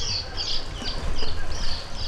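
A small bird chirping: a run of short, high notes, about four a second, over a steady low rumble.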